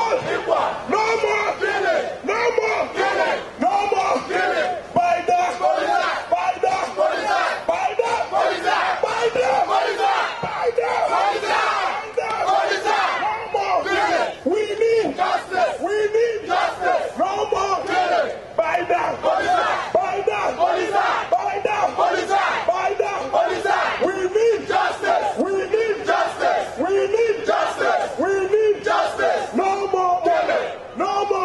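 A large crowd of marchers shouting together, many voices at once, loud and without a break.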